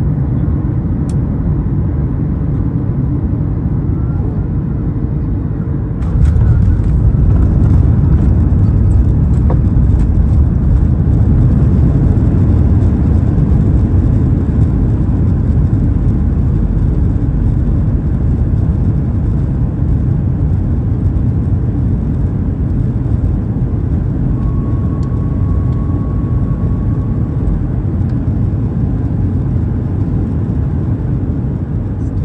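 Cabin noise of a Boeing 737 MAX 8 landing, heard from a window seat over the wing. A steady low rumble jumps suddenly louder about six seconds in as the jet touches down and the spoilers deploy. A loud rollout roar follows and slowly eases as the aircraft slows on the runway.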